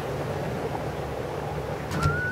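Small waves breaking and washing on a sandy beach as a steady rushing noise, with wind buffeting the microphone.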